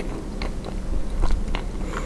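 A person chewing food with the mouth closed, close to the microphone, giving irregular soft wet clicks over a low steady rumble.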